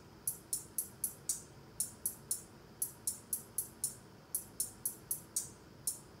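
Playback of a trap beat's hi-hat pattern through studio monitors: crisp ticks about four a second in short runs with brief gaps.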